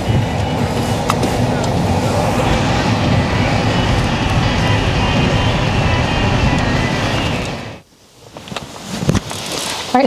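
Steady road and engine noise inside a moving car's cabin, cutting off suddenly about eight seconds in.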